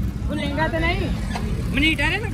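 A voice talking in two short stretches over a steady low rumble of street traffic.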